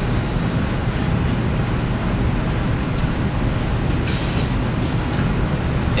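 Steady low rumble of classroom room noise, with a short hiss about four seconds in and another brief one just after five seconds.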